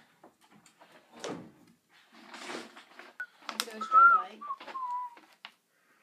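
A person whistling a short phrase of a few notes that step down in pitch, about three seconds in. Soft breathy rustles and a few light clicks come before and around it.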